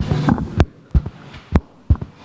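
Sharp pops from the lecture hall's PA system, repeating unevenly about twice a second, with a brief fragment of voice at the start. It is a fault in the sound system, which those present take for interference or feedback.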